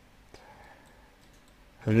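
A pause in a man's speech: low room tone with a few faint clicks, then his voice resumes near the end.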